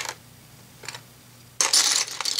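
Plastic Lego slope bricks clattering as a hand rummages through a tub of them: a sharp click at the start, a faint click about a second in, then a burst of dense clattering near the end.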